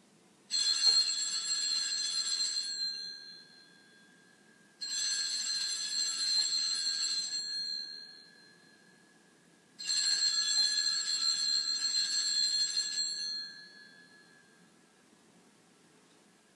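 Sanctus (altar) bells shaken in three peals, each ringing for about three seconds and then fading, with the peals about five seconds apart. They mark the elevation of the chalice at Mass.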